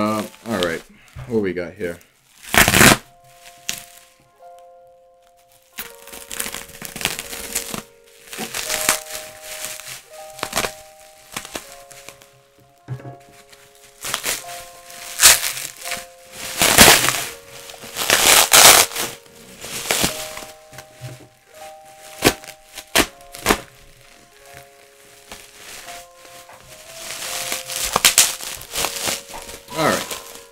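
Bubble-wrap packaging being crinkled and torn open by hand, in repeated loud rustling spells, over background music with a simple held melody.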